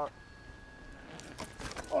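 Bicycle rolling through long grass toward the ground-level camera: a rustling that grows louder, with scattered clicks and rattles in the last second as it arrives.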